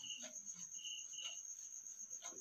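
Faint cricket chirping: short chirps at the same pitch a few times over a steady thin high whine.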